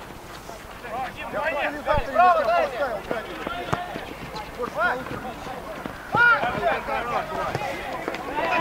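Football players shouting calls to each other during play, the loudest shouts about two seconds in and again near six seconds, with a few short thuds of the ball being kicked.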